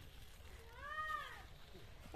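A single faint animal call, about a second long, rising then falling in pitch, about halfway through.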